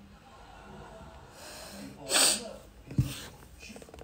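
A woman sneezing once: a short rising intake of breath, then one loud, explosive burst. A sharp knock follows about a second later.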